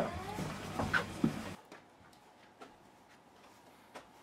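A few soft knocks in small-room noise. After about a second and a half it drops to near silence.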